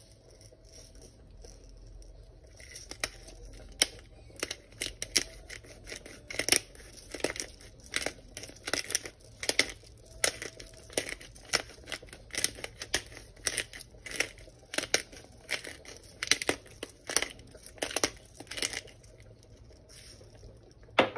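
A hand-twisted glass spice grinder grinding: a dry crunching crackle with each twist, about two twists a second. The twisting starts a few seconds in and stops near the end.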